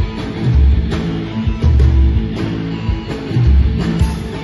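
A live rock band playing an instrumental passage through a stage PA: electric guitars, bass guitar and a drum kit, with heavy bass hits recurring about every second.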